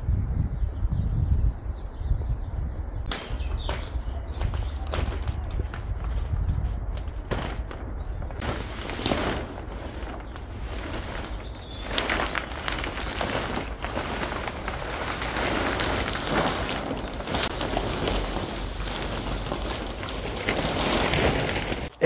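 Old polythene polytunnel cover being dragged off its frame: plastic sheeting rustling, crackling and flapping in irregular bursts that grow busier about a third of the way in, over a steady low rumble.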